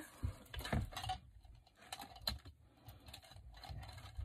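Handling noise as a deco mesh wreath is turned over and worked on from the back: faint rustling with scattered light clicks and taps.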